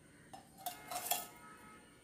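Metal spoon clinking against crushed ice and glass as ice is spooned into a wine glass: a few light clinks in the first second or so.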